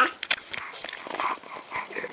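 A nine-month-old baby making a few short vocal sounds right at the microphone, with knocks and rubbing from the camera being handled. The loudest knock comes at the very start.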